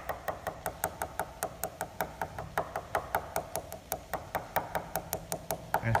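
A coin tapped rapidly and evenly on the glass-fibre foam-sandwich skin of a Duo Discus glider wing, about five taps a second. This is a tap test over a dent on the top surface, listening for the change in tone that marks where the skin has come away from the foam core.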